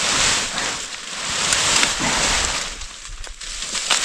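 Leafy branches of a bush rustling and shaking as they are pulled and broken off by hand, in two long swells of rustling with a few sharp snaps later on.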